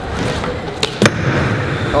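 BMX bike tyres rolling on a skatepark bowl, a steady rumble, with two sharp knocks about a second in.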